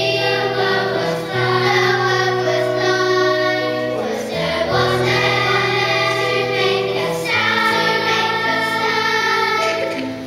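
Large children's choir singing a slow song together in long held notes, over steady low accompanying notes that change with the melody. There is a brief pause for breath about four seconds in.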